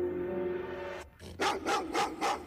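A dog barking in a quick run of short calls over background music, starting about halfway in.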